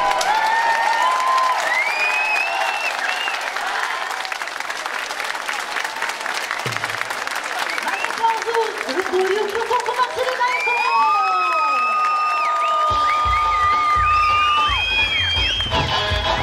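Audience applauding, with high whistles and calls over the clapping. About thirteen seconds in, heavy eisa drum beats start.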